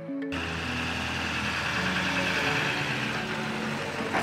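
Soft background music, with the noise of a pickup truck towing a gooseneck horse trailer coming in suddenly about a third of a second in. The tyre and engine noise builds as the rig drives past.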